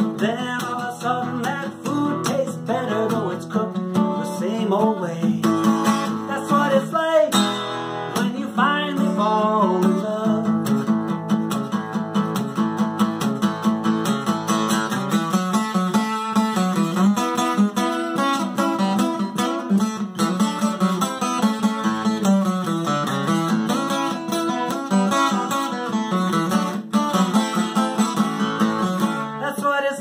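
Steel-string acoustic guitar strummed steadily in a country-style song, with a man singing over it through the first ten seconds or so, then the guitar carrying on alone.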